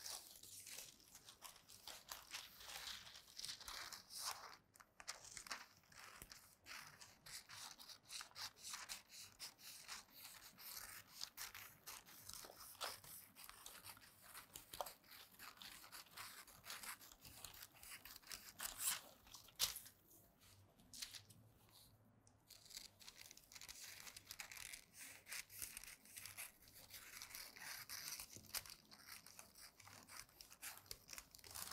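Faint sound of tailor's shears cutting through pattern paper, with the paper crinkling and rustling as it is handled. Many small snips and scrapes, with a short lull about two-thirds of the way through.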